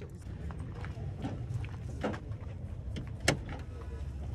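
An SUV door being opened and handled, with one sharp latch click about three seconds in over a low rumble.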